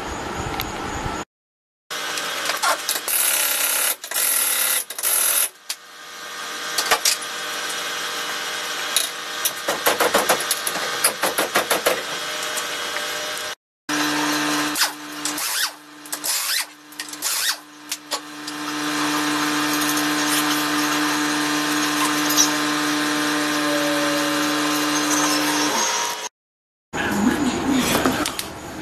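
Pneumatic impact wrench hammering lug nuts off a car wheel, in several separate runs with pauses between them. Near the end comes a longer steady run with a low even hum.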